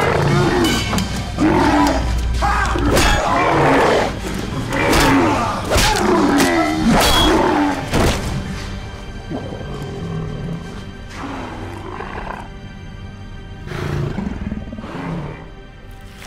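Fight sound effects for a reptilian creature: snarling roars and growls mixed with sharp hits and grunts for about eight seconds, over a dramatic music score. Then the fighting dies down, the music carries on quieter, and a couple of fainter growls come near the end.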